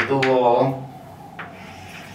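Chalk writing on a blackboard: a brief scraping stroke about one and a half seconds in, after a man's single drawn-out spoken word at the start.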